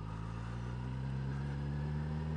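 Suzuki GSX-S1000 motorcycle's inline-four engine pulling steadily, its pitch rising slowly as the bike gathers speed.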